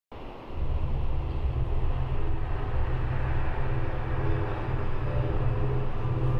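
Steady low rumble that starts about half a second in.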